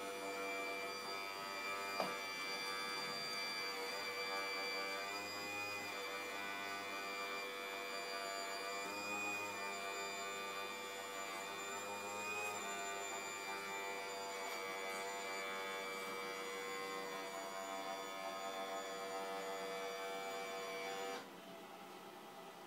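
Hydraulic pump of a Wedico RC Cat 345 excavator running with a steady, many-toned whine, its pitch dipping briefly a few times as the arm works under load, then cutting off about a second before the end. A single sharp click about two seconds in.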